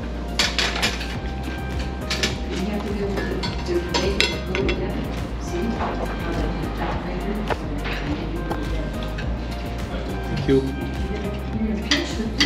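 Cutlery and ceramic plates clinking in short, irregular taps at a dining table, over background music and a low murmur of voices.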